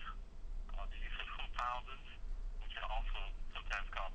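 Speech only: a person talking over a telephone line, the voice thin and cut off at low and high pitches, with short pauses and a steady low hum underneath.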